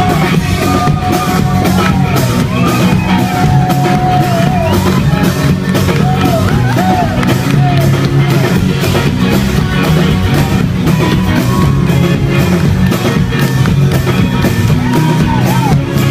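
Live band music: strummed acoustic guitar, electric guitar and a steady drum beat, with singers' voices over it.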